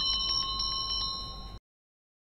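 A steady ringing tone of several high pitches sounding together, which cuts off suddenly about a second and a half in.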